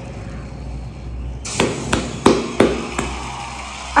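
A run of sharp percussive hits about a third of a second apart, starting about one and a half seconds in, over a low hum.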